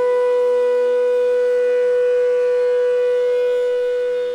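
Bansuri (Indian bamboo flute) holding one long note at a steady pitch, over a soft steady drone.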